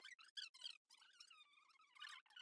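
Near silence: quiet room tone with only very faint traces of sound.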